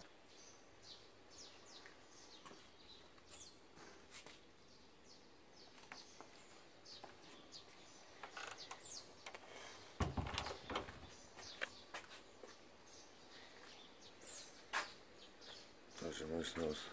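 Small birds chirping, a steady scatter of short, high, downward-sliding chirps. About ten seconds in there is a brief louder knock, like the phone being handled.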